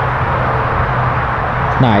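Steady rushing outdoor background noise with a constant low hum, unchanged throughout; a man's voice starts right at the end.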